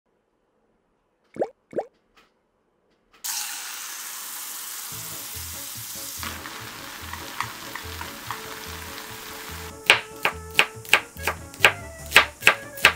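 Two short clicks, then tofu simmering in a pan of spicy red sauce, sizzling and bubbling with a steady hiss. Near the end a chef's knife chops scallions on a bamboo cutting board, about three sharp chops a second, over background music with a steady beat.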